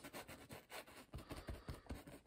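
Faint scratching of a paintbrush's bristles working oil paint onto a stretched canvas: a run of light, irregular ticks and short scrapes.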